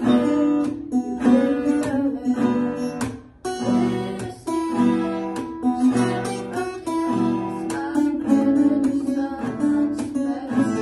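Two acoustic guitars strumming chords together, with a girl singing along; the strumming breaks off briefly a little after three seconds in.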